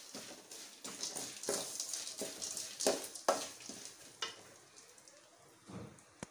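A metal ladle stirring and scraping puffed rice around an aluminium kadai over a frying tempering of mustard seeds and garlic, in irregular strokes; the stirring thins out in the last second or so.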